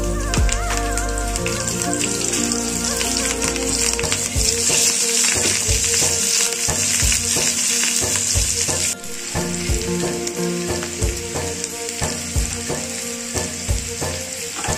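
Whole green chillies sizzling as they fry in hot oil in a pan, a loud steady hiss that drops abruptly about nine seconds in.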